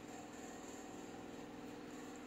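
Faint room tone: a steady low hum with a thin high whine, and no distinct event.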